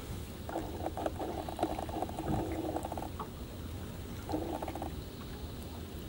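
Spinning fishing reel being cranked, its gears giving a fast, fine ticking whirr in two bursts: a long one of about two and a half seconds, then a short one near the end.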